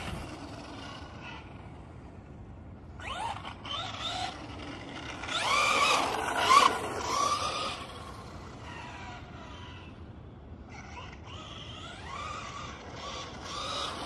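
Electric motor whine of a Helion Invictus 4x4 RC car being driven, rising and falling in pitch with the throttle in three bursts, loudest about five to seven seconds in.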